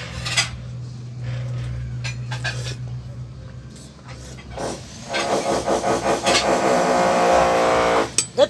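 A power drill running steadily from about five seconds in, loud, over a low hum, with a few short knocks before it starts.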